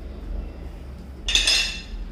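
Loaded EZ curl barbell set down on a hard floor, its metal weight plates clanking once, about a second and a half in, with a brief metallic ring.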